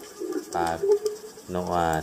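A man's voice speaking a few words of Thai narration.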